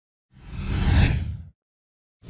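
A whoosh sound effect for an animated logo intro: one swell of rushing noise over a deep rumble, rising to a peak about a second in and then fading out quickly.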